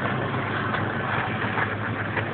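Motor vehicle engine idling with a steady low hum, and a short laugh at the start.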